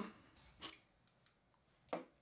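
Almost silent room tone, broken by two faint, brief clicks: one a little over half a second in and one near the end.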